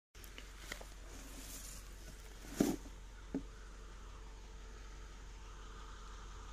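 Two knocks about three quarters of a second apart, the first the louder, with a few faint ticks before them, over a faint steady outdoor hiss.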